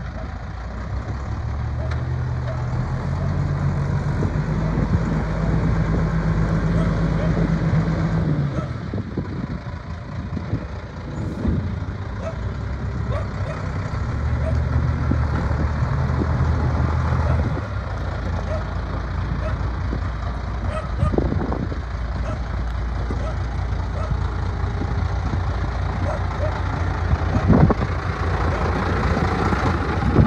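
International medium-duty truck's diesel engine running at idle, revved up and held at a higher speed twice, for about six seconds starting two seconds in and for about three seconds midway.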